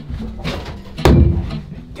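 A heavy thump about a second in, with a short boomy ring, struck inside a hollow plastic storage tank, among scuffling and movement.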